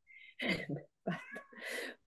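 A house cat meowing, with a short high call just after the start, mixed with a woman's halting speech.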